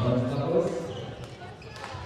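A man's voice speaking briefly in a large, echoing hall, loudest in the first second, with a single sharp knock near the end.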